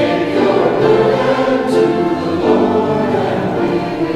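Choral music: a choir singing sustained chords.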